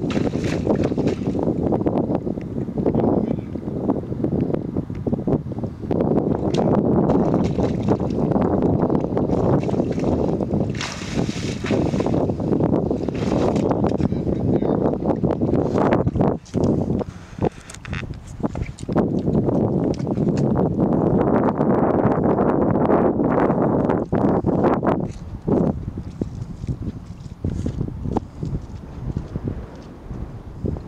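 Heavy wind rumbling on the microphone, with water sloshing as a person wades through shallow tidal water in chest waders. The sound grows patchier and quieter in the last few seconds.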